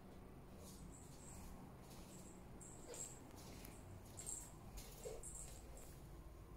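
Near silence: faint room tone with a scattering of brief, faint, high-pitched squeaks or clicks every second or so.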